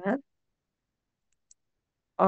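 The last syllable of a spoken word, then near silence broken by two faint, short clicks about a second and a half in.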